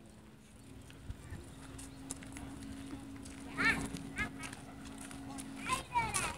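A distant train whistle, one long steady blast lasting about five seconds and slowly growing louder as the locomotive approaches, with onlookers' voices over it.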